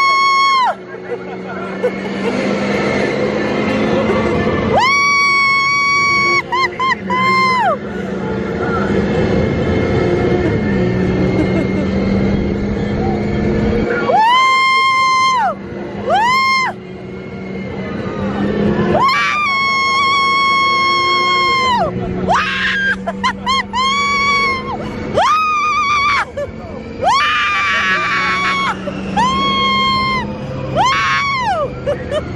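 Riders screaming in long, held whoops again and again, several voices at once in the later part, while a Radiator Springs Racers ride car speeds along its track with a steady low rumble and ride music underneath.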